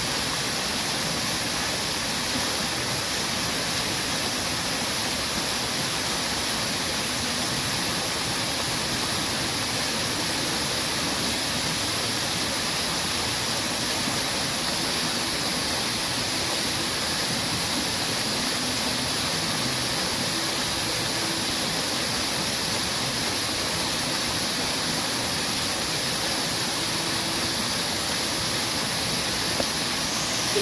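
Garden fountain's vertical water jets and rock-face waterfall splashing steadily into a pool: a constant, even rush of falling water.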